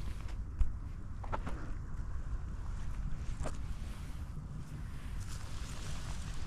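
Wind noise buffeting an action-camera microphone, a steady low rumble, with a few scattered footsteps on the lakeside path. One sharp click about half a second in is the loudest sound.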